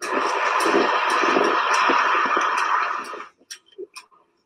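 A dense, harsh burst of electronic noise from a live electronic music setup. It starts abruptly, holds steady for about three seconds, then fades out.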